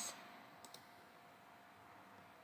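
Two quick, faint computer mouse clicks about two-thirds of a second in, selecting an option from a dropdown menu, then near silence.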